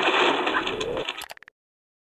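Sound effect of a channel logo intro: a noisy rush lasting about a second that fades out with a few clicks, then silence.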